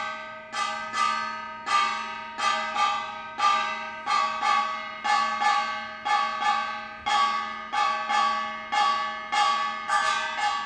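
Korean samulnori gong struck in a steady rhythm, about two to three strokes a second, each stroke ringing out and fading before the next.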